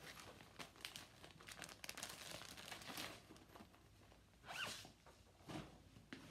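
Faint rustling and crinkling of plastic packaging as cross-stitch project kits are handled and set aside, in a run of short crackles, with a brief rising scrape about four and a half seconds in.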